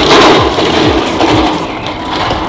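Rubbing and handling noise as an arm brushes against the camera, loudest in the first second, over background music with a thumping beat.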